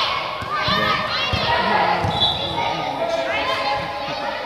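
Children calling and shouting in a large indoor sports hall, with footballs being kicked and thudding on the artificial turf every so often.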